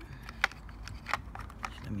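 A few sharp plastic clicks, the loudest about half a second in, as the case of a hoverboard charger is pried apart and its cover lifted off the circuit board.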